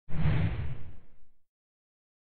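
A whoosh sound effect with a low impact, starting suddenly and fading out over about a second and a half.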